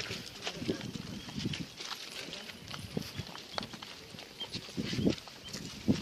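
Footsteps of a group walking on a stony trail: scattered taps and knocks of feet on rock, mixed with the group's voices talking.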